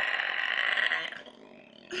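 A man making a harsh, breathy growling noise with his voice that fades out about a second in.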